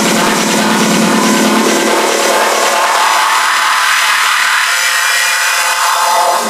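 Techno track in a DJ mix, dense and hissy across the range. About two seconds in the bass is filtered out, leaving only the thin upper part of the track.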